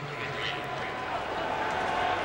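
Stadium crowd noise between plays: a steady din of many voices that grows a little louder.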